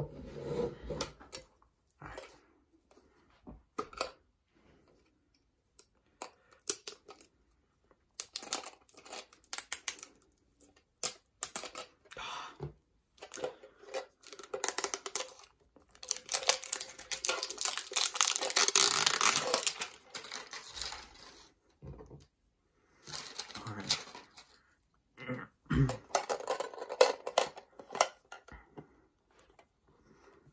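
Packaging of a Pokémon trading card pack being torn and crinkled open by hand: scattered short rustles, then a longer stretch of tearing and crinkling a little past halfway, and another shorter one near the end.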